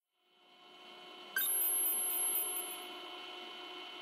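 A steady electronic hum of several held tones fades in. About a second and a half in, a quick run of high-pitched beeps, roughly six a second, plays over it for just over a second and is the loudest thing heard.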